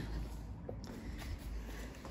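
Low rumble and faint handling noise from a phone camera being carried, with one soft click about two-thirds of a second in.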